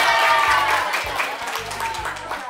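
Music with a steady low bass beat, under a group of children's voices singing that fade about a second in, with hand clapping from adults.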